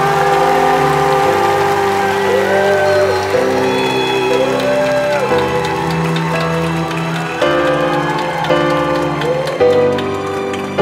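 Live slow pop ballad on grand piano with band accompaniment: sustained chords change every second or so, while a singer's voice slides up and down on held notes about three times.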